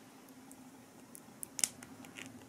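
A few faint, sharp plastic clicks as the blue cap is pressed down onto the saliva collection tube of a DNA kit, the loudest about one and a half seconds in. The cap pressing home lets the blue stabilising liquid into the saliva.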